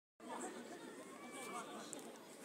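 Faint, indistinct chatter of several people's voices, with no clear words.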